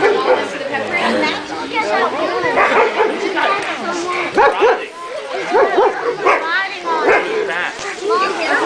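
Several dogs barking in short, repeated calls, thickest in the second half, with people talking over them.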